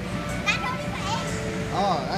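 Children's voices in a play area, with short rising-and-falling shouts or squeals about half a second in and again near the end, over background music and a steady low hum.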